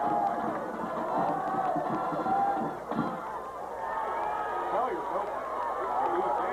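Football crowd shouting and cheering during a play, many voices overlapping.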